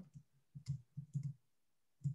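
A few faint computer keyboard clicks: one about two-thirds of a second in, then a quick pair just past a second. They are keyboard shortcuts for copying code and switching applications.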